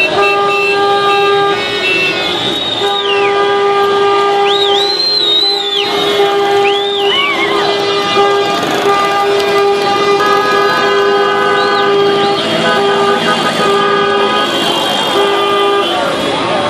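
Several car horns honking together in a slow street convoy, celebratory honking. Long held blasts give way to short repeated honks from about halfway through, over the shouting of a crowd and several high rising-and-falling whistles.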